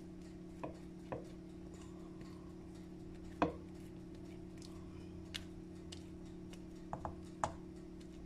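Rubber spatula scraping and tapping against a glass mixing bowl as thick batter is scraped out. It gives a few scattered soft clicks, the loudest about three and a half seconds in, over a steady low hum.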